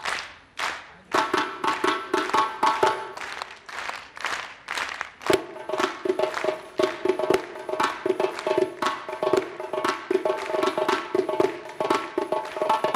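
Large hand-played frame drum: a few separate strokes, then from about a second in a fast, dense run of strikes over the ringing tone of the drumhead. One stroke about five seconds in stands out as the loudest.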